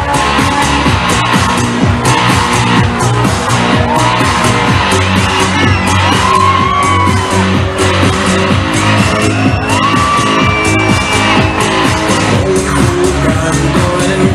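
Loud live pop music in an instrumental passage: a steady beat with a high melodic line that glides and is held for a second or so, several times.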